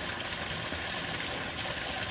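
Steady, even background hiss of outdoor ambience, with no distinct event.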